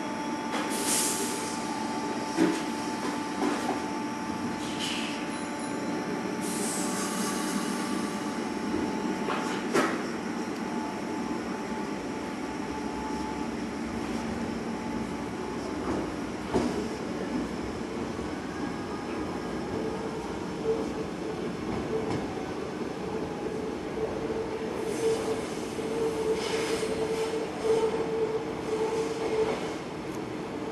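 Sanyo Electric Railway 3050-series electric train pulling out and running away, its motors and wheels on the rails making a steady mechanical sound with scattered clicks. There are high squeals from the wheels, strongest near the end as it takes the curved track.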